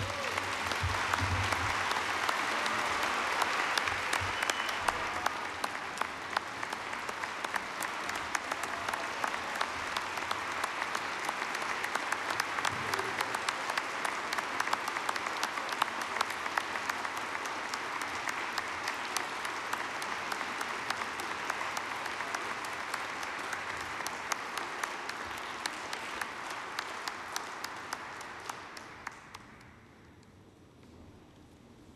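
Large audience applauding, loudest in the first few seconds, then steady, dying away near the end.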